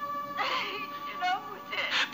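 A woman crying out in pain, a high wailing voice, over sustained melodramatic background music with long held notes.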